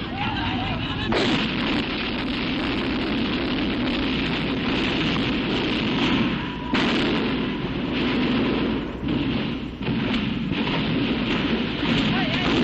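Gunfire and explosions of street fighting on old news-film sound, over a dense steady din, with a sudden loud burst about a second in and another just before seven seconds.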